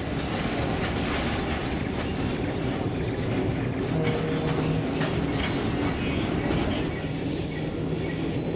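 Passenger train running along the track: a steady rumble and rattle of the carriage with the clack of wheels over rail joints, and a few short, high wheel squeals near the end.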